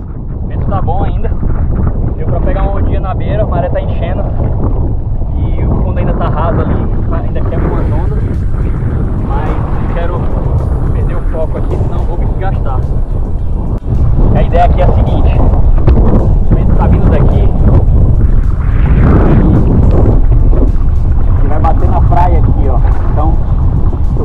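Strong wind buffeting an action-camera microphone over choppy sea water around a paddle board, a loud, dense rumble that gets louder a little past halfway through.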